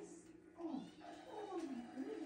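A domestic cat meowing twice, each meow falling in pitch.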